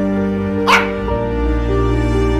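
Background music of slow, held notes, with a single short dog bark about three-quarters of a second in.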